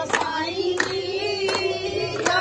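Women singing with hand claps on a steady beat, a clap about every three-quarters of a second.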